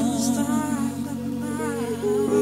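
Deep house music in a softer passage: held low chords under a wavering vocal line.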